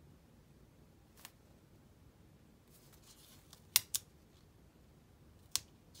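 A paper planner sticker being handled and pressed onto a planner page: a few sharp light clicks and taps, the loudest a little past halfway, with a faint papery rustle just before it.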